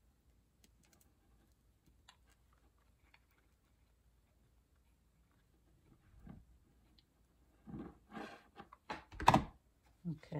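Hot glue gun in use: faint small clicks and fabric rustling while glue goes on around wooden dowels in a sock-covered styrofoam ball. Louder handling noises follow near the end, then one sharp knock as the glue gun is set down on the work table.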